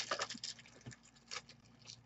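Soft clicks and rustles of hard plastic graded-card slabs and their plastic wrapping being handled, a cluster of taps in the first half second and then a few scattered clicks.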